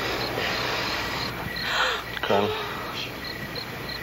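Crickets chirping steadily, about three chirps a second. About two seconds in, a woman in labour draws a breath and gives a short moan that falls in pitch.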